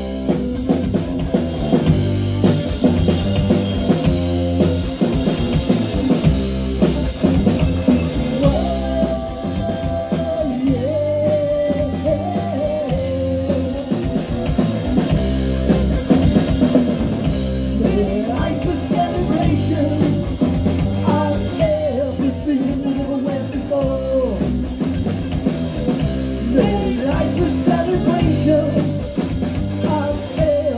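Live punk rock band playing a song at full volume: distorted electric guitar through Marshall amps, bass guitar and a drum kit keeping a steady beat.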